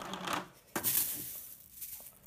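Freeze-dried kale leaves rustling and crunching as a scoop digs into the can. The sound starts sharply about three-quarters of a second in and fades over about a second.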